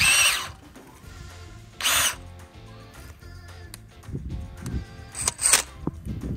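Cordless drill spinning a long auger bit down in a compost bin to stir and aerate the compost without turning it, run in three short bursts: at the start, about two seconds in and about five seconds in.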